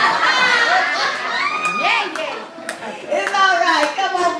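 Women's voices calling out and exclaiming over one another, with a few scattered handclaps.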